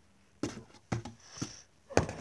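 A plastic model horse is handled and moved about in a cardboard box. There are a few soft knocks and rustles against the cardboard, then a sharp click near the end.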